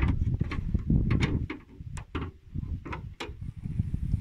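A Lada Vesta's hood being opened by hand: a string of sharp clicks and knocks from the latch, safety catch, hood panel and prop rod, over a low rumble.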